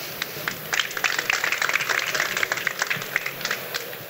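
Audience applauding: many hands clapping in a dense patter that swells about a second in and thins out near the end.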